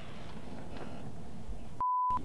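A short, steady, pure beep tone near the end, with all other sound cut out around it: an edited-in censor bleep covering a word. Before it there is only faint outdoor background.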